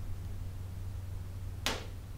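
One sharp click near the end, from small magnets and a metal tool being handled at a PVC toilet flange, over a steady low hum.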